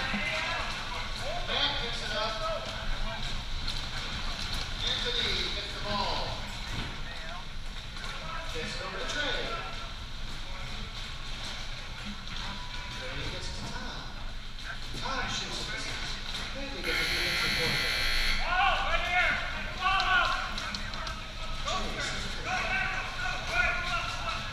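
Players calling and shouting across a reverberant Whirlyball court. About seventeen seconds in, an electronic buzzer sounds for about a second and a half, the signal of a goal scored.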